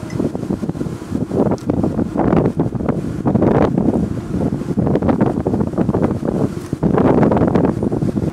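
Wind noise on the microphone: a loud, uneven rush that swells and dips.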